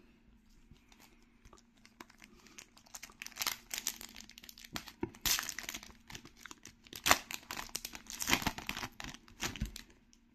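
Shiny foil booster pack wrapper for trading cards crinkling and tearing as it is ripped open by hand. It comes as a run of irregular sharp crackles and snaps starting about two seconds in.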